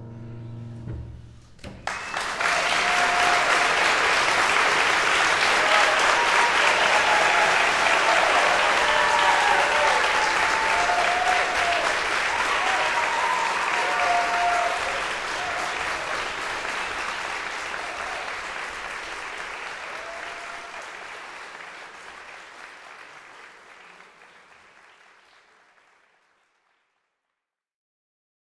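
Grand piano's final chord dying away, then a concert audience applauding, with a few voices calling out. The applause fades out steadily over the last ten seconds.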